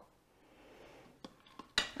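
A slotted spoon knocking against the stainless steel inner pot of an Instant Pot while scooping out steamed vegetables: a soft scrape, then a few light clicks, the loudest just before the end.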